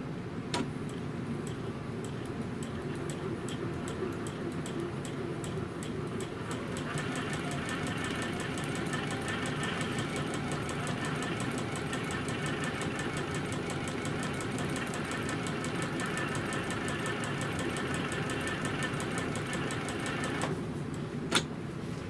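Juki sewing machine stitching, chain piecing quilt fabric: a steady run of rapid stitches that gets louder about seven seconds in and stops about a second and a half before the end, followed by a single sharp click.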